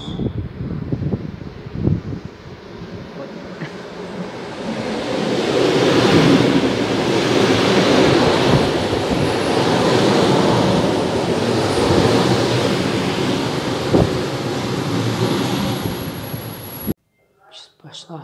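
Electric commuter train running close past the platform: a rumble of wheels and carriages that swells a few seconds in and stays loud, with a sharp knock near the end. The sound stops abruptly just before the end.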